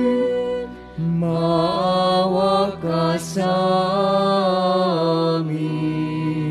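A singer performing a slow church hymn with vibrato over steady, held accompaniment chords. The voice comes in about a second in, breaks briefly near three seconds, and stops about five and a half seconds in while the chords sustain.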